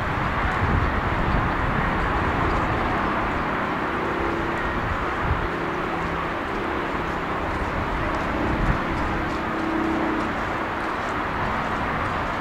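Steady outdoor noise with wind rumbling on the microphone, and a faint steady hum from about three to eleven seconds in.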